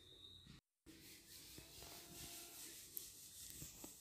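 Near silence: faint room tone with a few soft clicks of a wooden spoon against an aluminium pot as onions and raisins are stirred. There is a brief gap of total silence under a second in.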